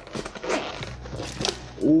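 Zipper on a hard-shell carrying case being pulled the last of the way round, in short rasping strokes, with handling noise as the lid is opened.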